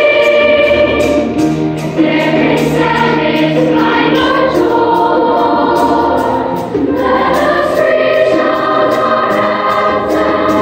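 A large youth choir of children's voices singing together in harmony, holding long notes, with two brief dips in loudness about two seconds in and near seven seconds.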